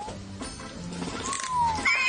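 Background music with long, sliding high-pitched animal-like calls over it, which sound like a cat meowing: one rising call, one falling call about halfway through, and a louder one at the end.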